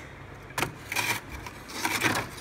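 Plastic airtight food container being pushed into a freezer compartment, scraping and knocking on plastic ice trays in a few short bursts.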